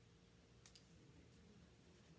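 Near silence: quiet room tone with a faint steady hum and a few faint clicks, two close together under a second in and another later.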